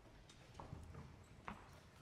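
Near silence in a hall: faint room tone with a few small clicks and knocks, the clearest about one and a half seconds in.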